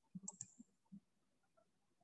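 Near silence, with a few faint short clicks in the first second.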